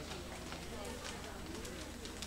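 Indistinct chatter of several people talking at once in a large hall, over a steady low hum.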